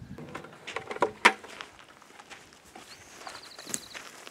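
Footsteps on loose rocky ground and the handling of a plastic bucket: scattered knocks and scuffs, with one sharp knock just over a second in.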